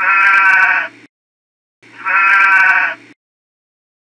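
A sheep bleating twice, each bleat about a second long with a quavering pitch, the second starting about two seconds after the first.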